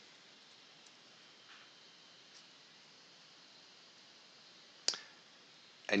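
Quiet room tone with a few faint ticks, then a single sharp computer mouse click about five seconds in.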